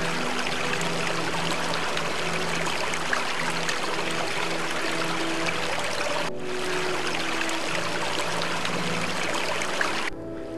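Shallow stream running over stones, a steady rushing of water, with soft background music holding long low notes over it. The water sound breaks off for a moment about six seconds in.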